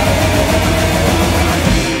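A metal band playing live and loud, with distorted electric guitars, electric bass and drum kit.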